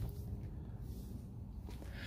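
Quiet background: a low, steady rumble with a faint hum and no distinct event.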